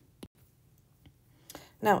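A single sharp click about a quarter second in, then a fainter tick about a second in, over a quiet background; a breath and the spoken word "Now" come at the end.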